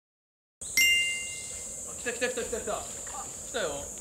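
Silence, then about a second in a short, bright bell-like ding that rings for about a second. It sits over a steady high-pitched insect buzz, with faint voices in the background.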